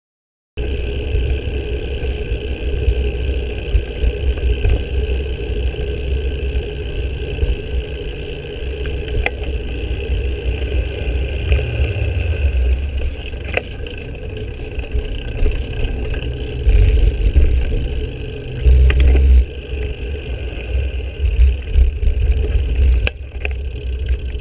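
Wind buffeting and road rumble picked up by a camera on a moving bicycle, steady throughout, with scattered sharp knocks from bumps in the surface and two louder rushes of noise about two-thirds of the way through.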